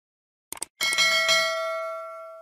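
A short mouse-click sound effect, then a notification bell sound effect struck twice in quick succession, ringing on with several steady tones and slowly fading.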